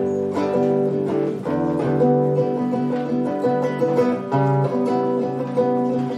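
Acoustic guitar playing a solo instrumental intro of picked notes and chords, with a new note or chord sounding every fraction of a second.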